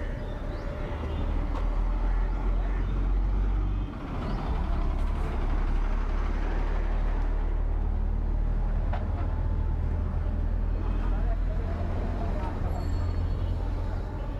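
City street sound picked up while walking: a steady, loud low rumble that dips briefly about four seconds in, with indistinct voices in the background.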